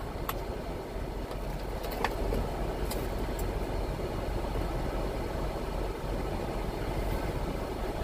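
Steady low rumble of an idling truck engine, heard inside a semi-truck cab, with a few light clicks in the first three seconds.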